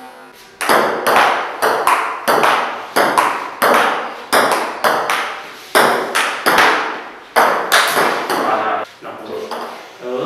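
Table tennis rally: a plastic ping pong ball clicking sharply off the paddles and the table, two to three hits a second, each hit echoing in the room. The rally starts about half a second in and stops near the end.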